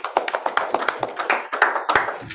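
Applause from a small group of people: a dense run of overlapping hand claps.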